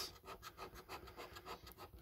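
Scratch card's coating being scraped off with a hand-held scratcher: a faint, quick run of short scraping strokes.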